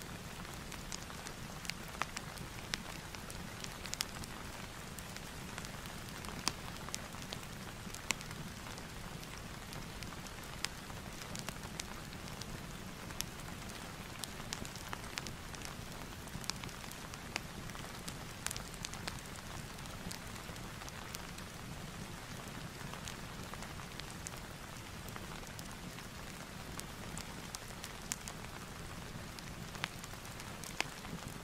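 Steady rain sound with scattered sharp crackles from a fireplace layered in, an ambience track for concentration.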